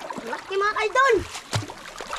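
Feet wading and splashing through shallow water over rocks, with a sharp splash about one and a half seconds in. A high voice calls out briefly in the first half and is the loudest sound.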